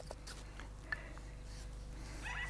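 Faint handling sounds of a hand-carved pine flute being worked: small scattered clicks and scrapes, with one sharper tick about a second in.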